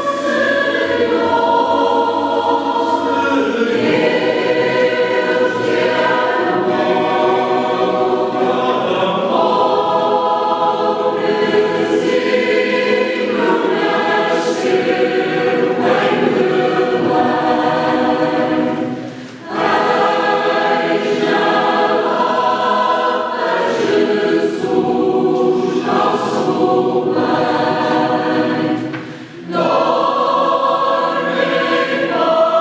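Mixed choir of men's and women's voices singing a Christmas carol in a church, in sustained chords, with two short breaks between phrases, about 19 and 29 seconds in.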